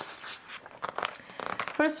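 Magazine pages being turned by hand: a papery rustle with a run of short crinkles and flaps in the middle as the page is swept over and lands flat.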